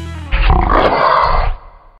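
The last held chord of a rock track dies away, then about a third of a second in a single animal roar, a bear-roar sound effect, lasts about a second and fades out.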